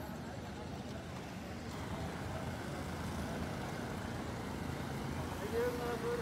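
Road vehicle engine running, a steady low rumble that grows a little louder partway through, with a voice starting near the end.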